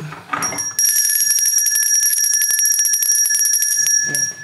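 A small red handbell rung rapidly, its clapper striking many times a second for about three seconds, with a steady high ringing tone. It starts about half a second in.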